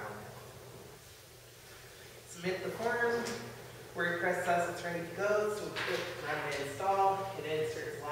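Speech: a man talking, after a pause of about two seconds at the start.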